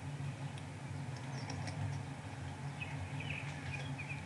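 Small birds chirping, a few short, scattered high chirps that come more often in the second half, over a steady low hum.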